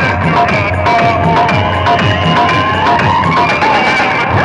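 Loud DJ dance music with a heavy, repeating bass beat, blaring from a truck-mounted stack of horn loudspeakers in a road-show sound-box rig.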